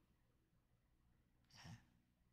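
Near silence: room tone, with one faint short breath from the man about one and a half seconds in.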